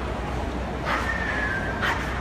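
A dog barking twice, about a second in and again near the end, with a thin high whine between the barks.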